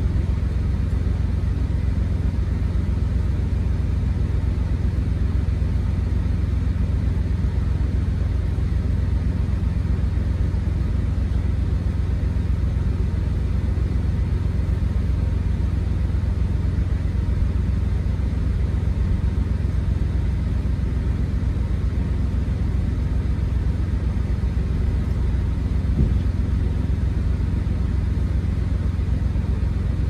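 Freightliner Cascadia's diesel engine idling, heard inside the cab as a steady low rumble, with one faint click near the end.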